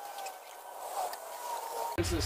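A pitchfork dragging and scraping half-composted leaf and bedding material across the dirt, a soft rustle with a few small clicks. A chicken gives a faint drawn-out call in the second half.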